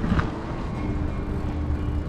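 Steady low rumble of wind on the microphone and bicycle tyres rolling on asphalt while riding, with a brief click near the start.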